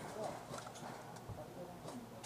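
Faint distant voices with a few scattered light clicks.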